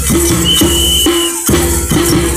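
Lezims, wooden-handled hand instruments strung with small metal jingles, clashing in rhythm as a group of dancers swings them, over music with a strong steady beat. A high steady tone sounds for about a second in the middle.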